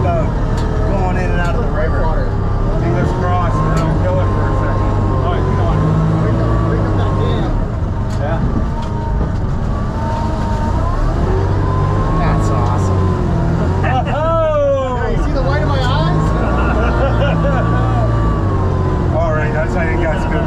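Sherp amphibious ATV's diesel engine running steadily with a low drone, with voices faintly over it. About fourteen seconds in there is a brief high sound that falls sharply in pitch.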